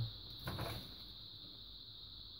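A brief rustle and scrape of a thin plastic reflector sheet being pulled off a TV's LED backlight panel, about half a second in, then quiet handling with a steady high whine underneath.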